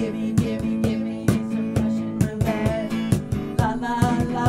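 Live acoustic guitar strumming with a drum kit keeping a steady beat, hits about every half second, in an instrumental stretch of the song.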